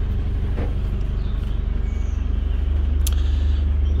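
An engine idling, heard as a steady low rumble with a fast regular beat. A sharp click comes about three seconds in.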